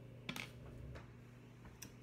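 Faint plastic clicks and handling as the safety cap is pushed back onto a syringe needle, the sharpest click about a third of a second in and a smaller one near the end.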